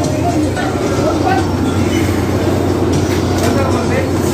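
Steady rumbling background noise of a busy supermarket with a constant low hum, and faint voices now and then.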